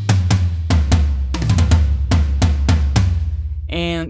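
Sampled acoustic toms from Native Instruments Studio Drummer, played from a keyboard: a quick run of tom hits stepping down in pitch towards the low toms, the last one ringing out about three seconds in.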